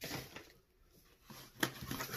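Faint handling noises of small items on a table: light rustles and taps, with one sharper click about one and a half seconds in.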